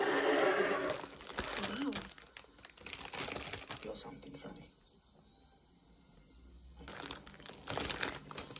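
Clear plastic bread bag crinkling as a loaf is handled and pieces are pulled out of it. The rustle is loudest in the first second, crackles on until about four seconds in, goes quiet, then starts again near the end.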